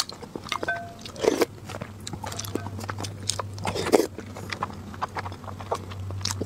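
Close-miked chewing of a soft boiled egg: short wet smacks and mouth clicks, with two louder smacks about a second in and about four seconds in. A low steady hum sets in about halfway through.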